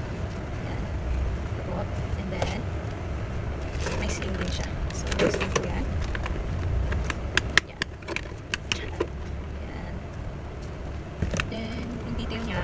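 A handbag being unpacked: rustling of its fabric dust bag and wrapping, then a run of light metallic clicks and jingles from its chain strap and hardware about seven to nine seconds in, over a steady low rumble.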